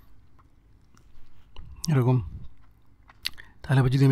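A man's voice saying a single word about two seconds in and starting to speak again near the end, with a few faint, short clicks in the quiet gaps between.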